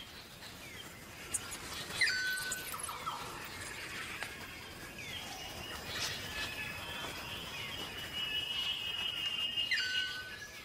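Bird calls: short high whistled notes and chirps starting about two seconds in, then a long steady high whistle near the end.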